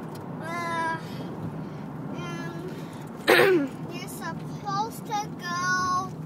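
Short, high-pitched wordless vocal sounds, with a louder squeal about three seconds in and a string of quick short calls near the end. Under them runs the steady road noise of a moving car.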